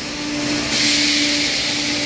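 Steady hiss with a constant hum from a tyre-retreading curing chamber and its vacuum and steam lines; the hiss grows louder a little under a second in.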